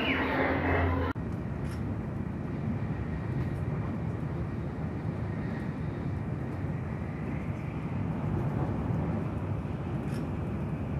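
Steady rumble and rushing noise from inside a Shinkansen bullet train travelling at speed. It starts abruptly about a second in.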